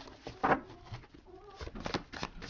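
Tarot cards being shuffled and handled: a sharp card slap about half a second in, then quicker light clicks of cards near the end, with a faint wavering tone in between.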